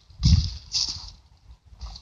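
Footsteps on dry leaf litter and forest floor: a low thump shortly after the start, then two fainter steps.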